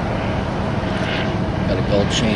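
Steady low rumble of vehicle engines and traffic, with faint distant voices near the end.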